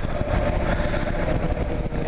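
2009 Kawasaki KLR 650's single-cylinder engine running at a steady pace while riding, mixed with a steady rush of wind and road noise.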